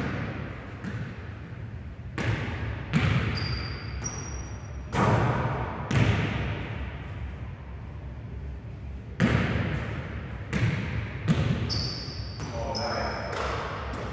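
A basketball repeatedly bouncing on a hardwood gym floor and smacking into hands on passes and catches, about eight sharp thuds that ring out in a large echoing gym. Sneakers give a few short, high squeaks on the floor.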